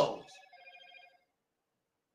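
A faint electronic warbling tone with several pitches at once, lasting about a second and then stopping.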